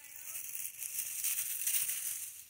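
Dry pine needles and leaf litter rustling as a hand pushes them aside.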